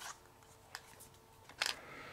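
Small cardboard flashlight box being turned over in the hands: faint rubbing and handling with a light tap under a second in and a sharper click about one and a half seconds in.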